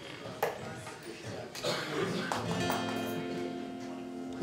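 Acoustic guitar being tuned: single strings are plucked while the tuning pegs are turned, and from about halfway in several notes ring on together.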